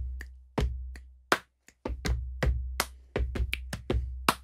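A body percussion rhythm played at a brisk, even tempo: deep thumps from chest hits and foot stomps on a wooden floor alternate with sharp finger snaps and hand claps.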